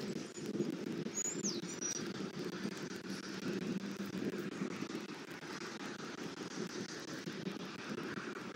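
Outdoor pond-side ambience: a steady low background rumble, with one short, downward-sliding bird whistle about a second in.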